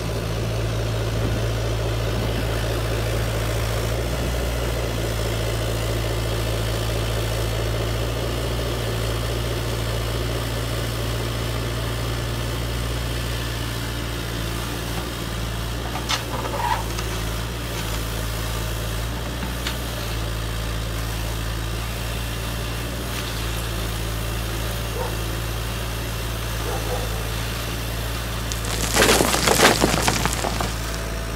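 The hydraulic pump of a large RC Caterpillar excavator runs with a steady hum. Near the end a bucketload of stones clatters loudly into the tipper bed of an RC truck.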